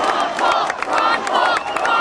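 A large crowd cheering and shouting, with many hands clapping and voices calling out over the din.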